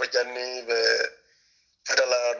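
A man's voice speaking, breaking off for a short pause over a second in, then starting again near the end.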